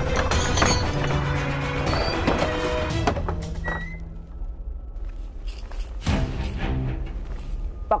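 Dramatic background score for a TV serial, full for the first few seconds and then thinning out. A thunk near the start comes as the chain on a wooden door is unfastened.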